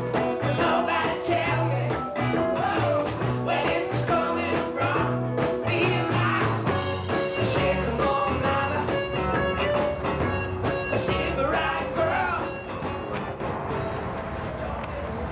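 A band playing a song with singing, guitar and a steady drum beat; it dips a little in level near the end.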